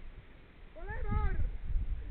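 A person's short wordless cry, rising then falling in pitch, about a second in, over a low rumble on the microphone.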